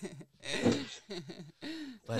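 Soft voices in a lull of conversation: quiet chuckling and murmured vocal sounds in a few short bits, the last a single drawn-out hum.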